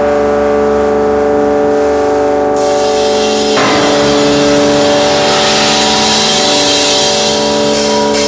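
Loud sustained electric drone chord opening a live band's song, held steady with no beat. A rushing noise swells in about two and a half seconds in, and the chord shifts about a second later.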